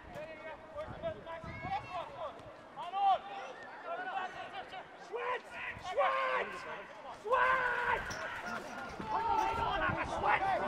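Footballers shouting calls to each other across an open pitch during play. There is a loud shout about three seconds in, and longer held calls around six and seven and a half seconds, with the odd thud of the ball being kicked.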